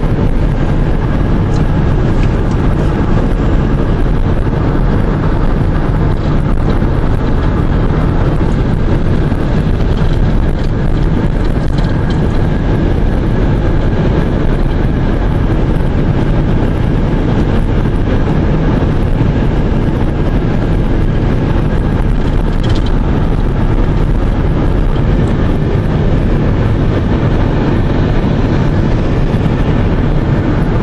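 Steady road noise of a car cruising at highway speed, heard from inside the cabin: a constant low rumble of tyres and engine with rushing air.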